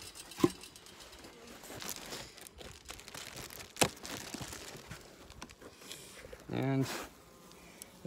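Crinkling and rustling of a beehive's foil-faced insulation wrap and cover being handled as the hive is opened, with two sharp knocks, one about half a second in and one near the middle.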